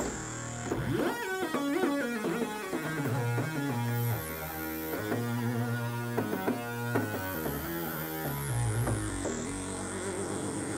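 Sequential Prophet-5 analog polyphonic synthesizer being played: a low bass line with quick, short higher notes stepping over it.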